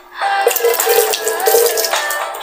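Water from a drinking glass splashing onto a face, a loud wet rush starting about a quarter second in, over pop music with a melody.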